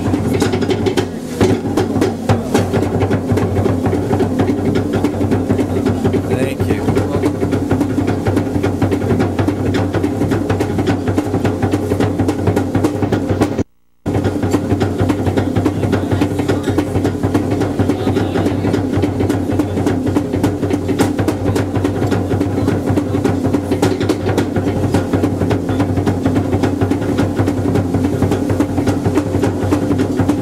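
Live Polynesian show music: fast, steady drumming with voices over it. The sound cuts out for a split second about 14 s in.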